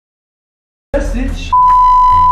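A steady electronic bleep tone at a single pitch cuts in about one and a half seconds in, right after a voice asks "who?", the kind of bleep dubbed over to hide the answer.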